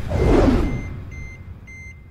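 Film sound effect: a loud swoosh falling in pitch, then a thin electronic beeping that repeats about twice a second.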